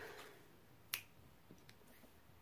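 A single sharp click about a second in, followed by a couple of faint ticks; otherwise near silence.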